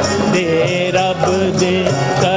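Devotional music: a wavering melodic line over a steady beat of hand percussion with jingling.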